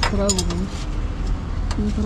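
Light metallic clinks of spanners and engine parts being handled during scooter servicing, a few in the first half-second, with two short held voice sounds and a steady low rumble underneath.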